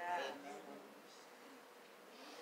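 A man's voice trailing off in the first half-second, then quiet room tone.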